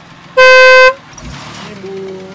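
A car horn sounds once: a single loud, steady blast lasting about half a second, followed by a short rushing noise.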